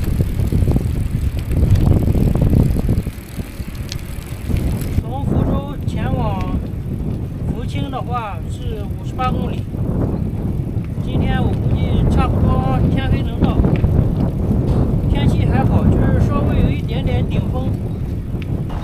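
A loaded touring bicycle riding along a road, with wind rumbling loudly on the bike-mounted microphone. From about five seconds in, a wavering, warbling voice-like sound runs over it.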